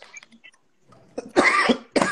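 A person coughing: one loud, harsh cough about a second and a half in, after a near-quiet first second.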